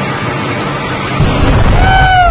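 Steady hiss, then about a second in a deep rumble sets in and keeps on. Near the end a high wailing tone holds and then slides down in pitch.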